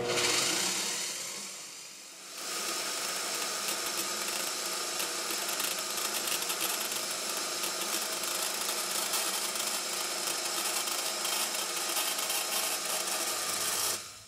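WEN portable band saw, set to its lowest speed, running steadily and sawing through 1/8-inch aluminum sheet. The sound eases for about two seconds, then jumps louder and holds steady as the blade bites into the metal.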